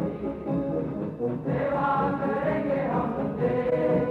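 Music with a choir singing held notes over the accompaniment.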